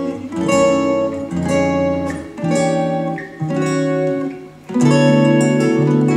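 Acoustic guitars strumming sustained jazz chords, one chord struck about every second and left to ring, with a louder, fuller chord near the end.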